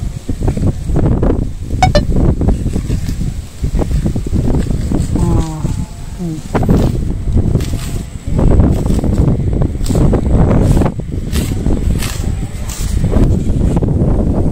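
Wind rumbling and buffeting on the microphone in gusts, with brief voices in the background.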